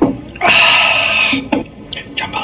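A man's loud, raspy 'aaah' of refreshment, lasting about a second, right after a swig from a soda can.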